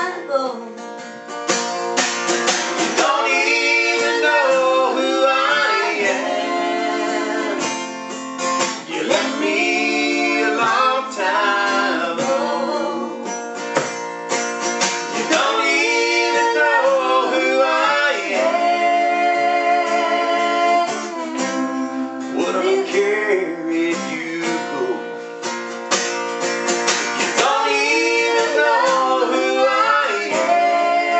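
Acoustic guitar strummed while voices sing a country song through it.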